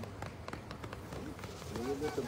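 A sled dog team running past on packed snow: a quick, irregular pattering of paws. Faint voices come in near the end.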